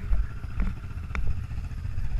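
Honda TRX250R quad's two-stroke single-cylinder engine idling, a steady low running sound, with a few short sharp ticks.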